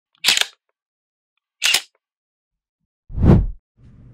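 Logo intro sound effect: two short, sharp snaps about a second and a half apart, then a louder swoosh that sweeps downward into a low thump, with dead silence between them.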